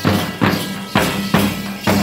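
Percussion-led music for a Gusadi dance, with sharp strokes at about two a second over a steady low tone.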